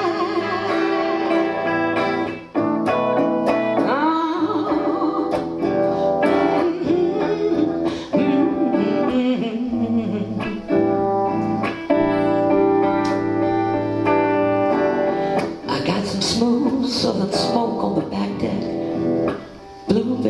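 Epiphone electric guitar playing a slow song accompaniment, with a woman singing at times.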